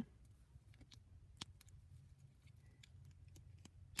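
Near silence with a few faint, small clicks of plastic Lego minifigure parts being handled and fitted together, the clearest about one and a half seconds in.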